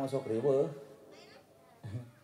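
A man's voice through a microphone and PA: one drawn-out utterance with a wavering, sliding pitch, then a pause, and the next phrase starting near the end.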